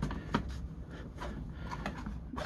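Hard plastic toy playset pieces handled and pressed together, giving a few light clicks and taps as a section is pushed to snap into place.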